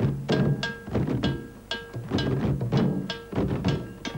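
A group of rope-tuned goblet hand drums struck with bare hands in a steady ensemble rhythm, a few ringing strokes a second.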